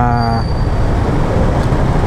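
A motorcycle idling steadily through an open aftermarket muffler fitted with a silencer insert, a rough, even low running sound. The rider's voice trails off in the first half second.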